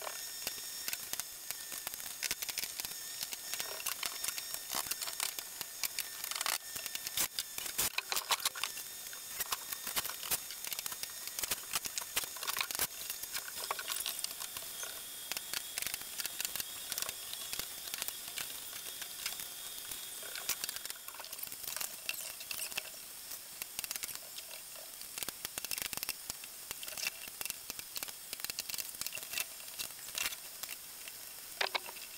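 Hands-on work noise: dense, irregular clicks and light knocks over a steady hiss, with a faint high steady tone in the middle.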